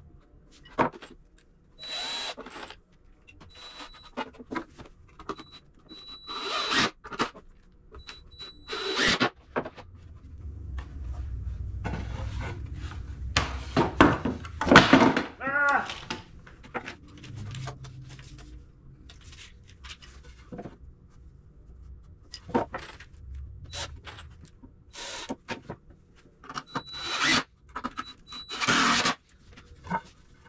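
Cordless screw gun driving deck screws into 2x4 pine in several short bursts of a second or two each, with a whining tone in each run and a squeal from the screw in the wood near the middle. Short knocks of the lumber being handled sound between the bursts.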